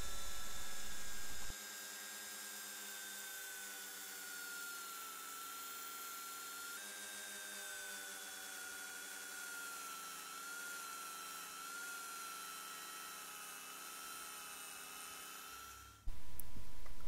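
Handheld rotary tool spinning a wheel against a die-cast metal car body, a steady high-pitched whine whose pitch sags slightly now and then as the wheel is pressed onto the metal. A louder low rumble runs under it for the first second and a half, then cuts off suddenly.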